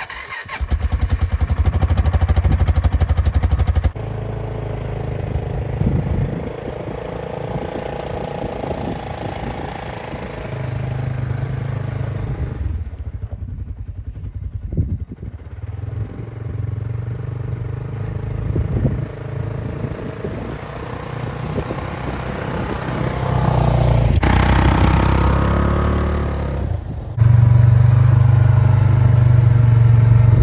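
Polaris RZR side-by-side buggy's engine starting about half a second in and then running, its note rising and falling, and louder near the end as the buggy drives off.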